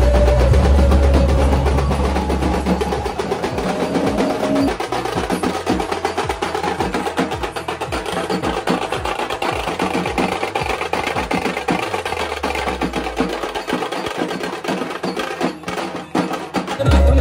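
Loud music with heavy, fast drumming, played through large loudspeaker cabinets. The deep bass drops out about four seconds in and returns for a while later on.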